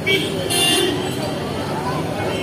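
Busy street noise with many voices of a crowd and passing traffic, a vehicle horn honking briefly near the start and again about half a second in.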